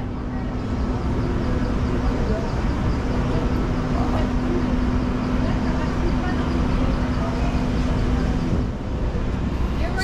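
Steady machinery hum with a held low drone over a broad wash of noise; the drone drops out briefly about two seconds in and again near the end.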